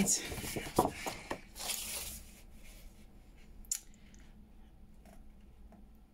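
Sheets of paper being handled and slid on a desk, a rustle and scrape over the first two seconds, then a single sharp click a little past the middle.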